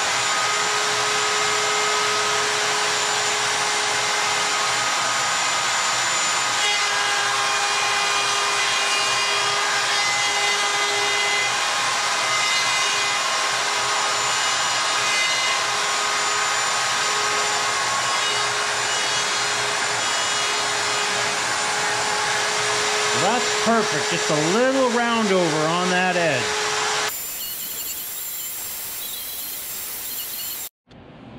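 Router mounted in a router table running steadily with a constant whine, cutting a quarter-inch round-over along the edges of oak boards. Near the end the sound drops to a thinner, quieter hiss.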